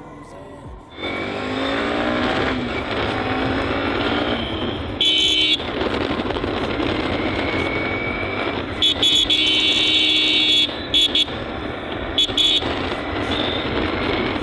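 Motorcycle engine accelerating hard, its pitch climbing as it pulls away about a second in, with loud exhaust and wind noise, then running on steadily. Several loud, high-pitched blasts cut in over it partway through and again near the end.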